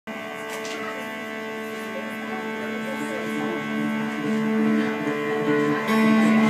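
Hollow-body electric and acoustic guitars playing a slow intro, held chords ringing steadily with a hum underneath, growing gradually louder.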